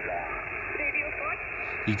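Icom IC-7300 HF transceiver's speaker playing 20-metre single-sideband receive audio: steady band hiss cut off sharply above about 3 kHz, with a faint distant voice and a brief rising whistle about a second in.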